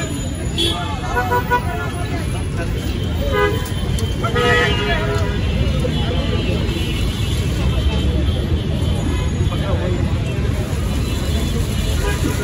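Busy city street traffic: a steady rumble of passing vehicles, with horns tooting a few times, the longest about four seconds in, and crowd voices around.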